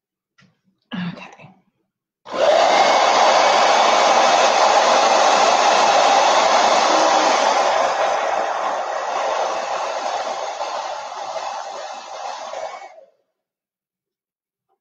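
Handheld hair dryer running steadily, switched on about two seconds in and off near the end, a little quieter over its last few seconds.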